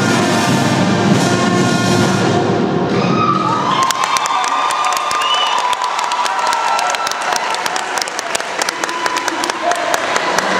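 Marching band brass section, with sousaphones, trombones and trumpets, playing a tune that cuts off about four seconds in; irregular clapping and cheering voices follow.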